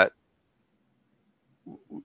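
A man's voice over a headset microphone: the tail of a drawn-out word, a pause of about a second and a half of near silence, then two short, low sounds as he starts speaking again.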